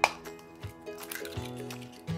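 A single sharp crack as an egg is broken on the rim of a stainless steel mixing bowl, right at the start, dropping onto ground meat. Soft acoustic guitar background music plays under it.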